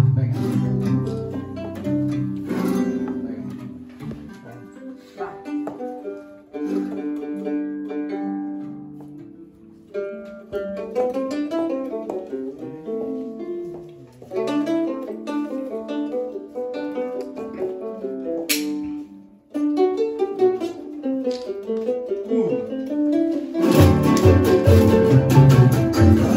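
A small guitar-like plucked string instrument playing a picked melody note by note, largely on its own after the full group of guitars drops away a few seconds in. A single sharp knock comes about three-quarters of the way through, and the whole group of guitars and other strings comes back in loudly just before the end.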